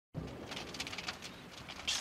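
Faint forest ambience with bird calls and scattered light ticks.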